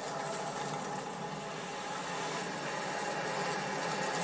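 Steady traffic sound of pickup trucks and cars driving past with their engines running, growing slightly louder toward the end, heard through a television's speaker.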